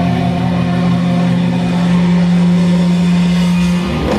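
Rock band playing live through a PA: a chord held steady over a sustained low note, without singing, breaking off at the very end as the full band with drums comes back in.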